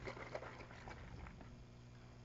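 Faint, irregular rattling of a small container of perfume mixture being shaken by hand.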